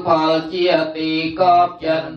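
Khmer Buddhist chanting: voices reciting a prayer syllable by syllable in a steady rhythm on a nearly level pitch.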